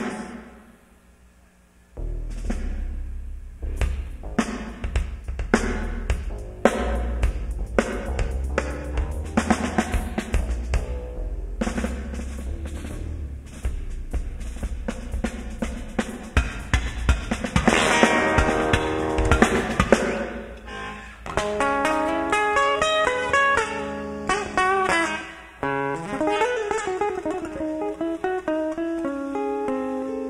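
Rock drum kit played in a soundcheck: kick drum, snare and cymbal hits after a brief quiet start, with a loud cymbal wash a little past halfway. About two-thirds of the way in, melodic runs of notes from another band instrument come in.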